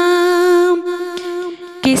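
An unaccompanied female voice singing an Urdu nazm. It holds one long steady note, which then fades, and a new note starts just before the end.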